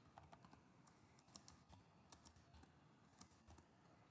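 Faint typing on a computer keyboard: a scatter of soft, irregular key clicks.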